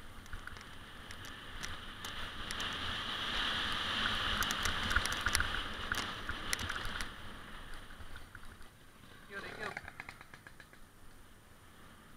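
Mountain bike ridden fast down a dirt singletrack, heard from a helmet camera: rushing wind and tyre noise that swells in the middle, with many sharp clicks and rattles of the bike over bumps.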